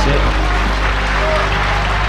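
Audience applauding while the last notes of the song's accompaniment still sound underneath.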